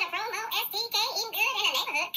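A woman's voice, unusually high-pitched, its pitch rising and falling quickly in short broken runs.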